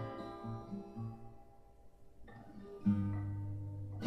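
Acoustic guitar played softly: a few picked low notes fading away, then a chord strummed about three seconds in and left ringing.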